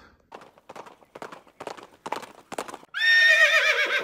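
Horse hooves clip-clopping in a string of about ten even steps, then a loud horse whinny about three seconds in, its call wavering and falling slightly in pitch.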